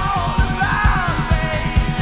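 Live rock band playing with a steady kick-drum beat under a male lead vocal.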